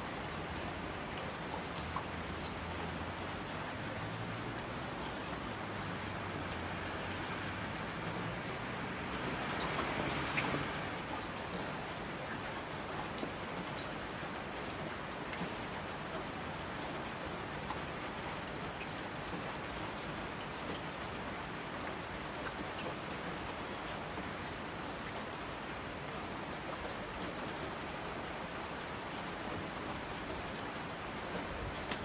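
Steady rain falling on a surface, with scattered sharp drop ticks; it swells louder for a couple of seconds about a third of the way in.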